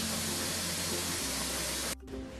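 A steady, even hiss with a low hum underneath, cutting off abruptly at the end.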